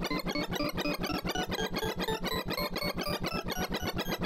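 Sorting-algorithm sonification: a rapid, even stream of short synthesized notes, about ten a second, their pitches jumping up and down as each note follows the value of the array element being compared or swapped during Surprise Sort's final merge on 128 numbers.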